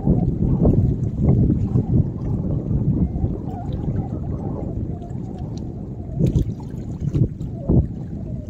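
Wind buffeting the microphone in gusts, a low rumble that swells and drops, over small waves lapping against the shoreline rocks.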